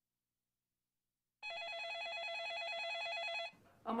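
Telephone ringing: one warbling ring that starts about a second and a half in and stops shortly before the end.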